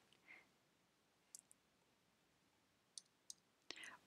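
Near silence, with a few faint short clicks, the first about a second in and two more close together about three seconds in.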